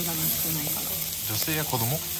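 Lamb slices and bean sprouts sizzling on a domed jingisukan grill pan: a steady high frying hiss.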